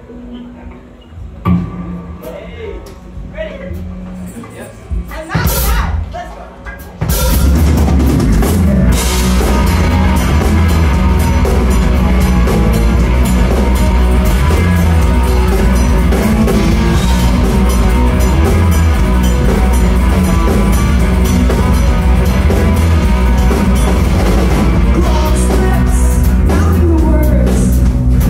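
Live rock band starting a new song: a quieter, sparse opening, then about seven seconds in the full band comes in loud with drum kit, electric guitars and heavy bass, and plays on steadily.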